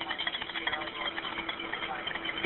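Background noise on a telephone line during a 911 call: a steady low hum under an even hiss, with faint, indistinct voices.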